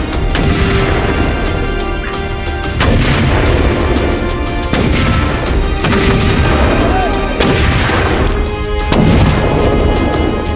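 Infantry mortar firing, about six sharp launch reports one to two seconds apart, over music.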